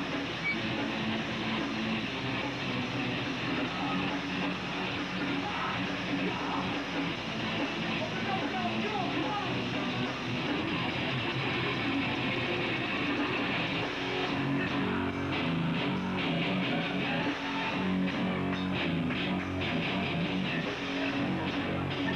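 Hardcore punk band playing live: distorted electric guitars and drums, loud and steady, with a denser pounding beat in the second half.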